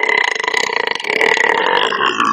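A man's single long, loud burp, held at an even pitch without a break.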